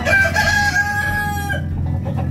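A rooster crowing once: a long, held call that cuts off about a second and a half in.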